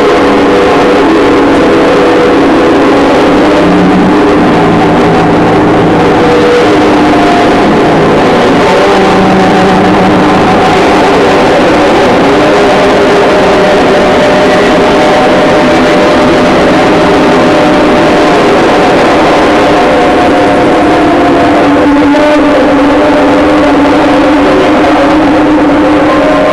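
Live noise music: a loud, dense, distorted wash with several sustained drone tones that shift in pitch now and then, with no break.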